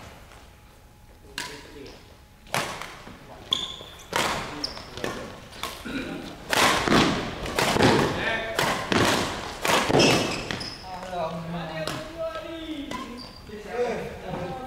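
Badminton rally: rackets striking the shuttlecock and players' feet landing on the court floor, a string of sharp hits that come thickest and loudest in the middle, with a few brief shoe squeaks.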